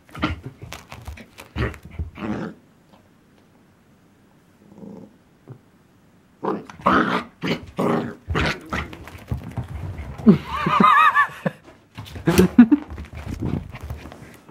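A dachshund puppy and an older dachshund play-fighting, growling and yapping in quick bursts. There is a lull of a few seconds in the middle, then a livelier run of growls and yaps, with a high wavering squeal about ten seconds in.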